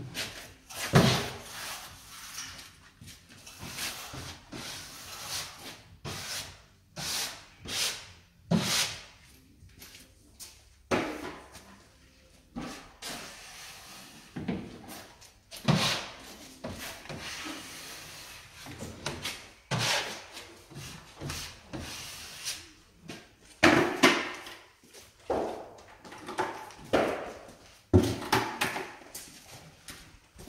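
A drywall finishing tool on a long extension handle being pushed along a wall-to-ceiling corner joint: irregular scraping, rubbing strokes one to a few seconds apart.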